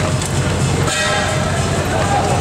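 Loud street-procession din: a steady low rumble with a sustained horn-like tone over it, swelling about a second in.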